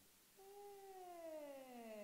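A patient's voice holding a vowel during laryngoscopy, starting about half a second in and gliding steadily down from a high pitch to a low one. The vocal folds producing it show a posterior glottic gap (hiatus posterior).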